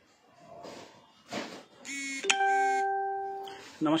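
An electronic chime: a brief pitched tone, then a single steady ding-dong note that rings out and fades over about a second and a half.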